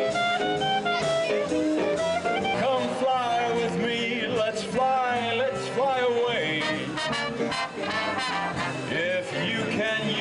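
Big band swing music playing, with a melody line that wavers and bends in pitch over a steady accompaniment.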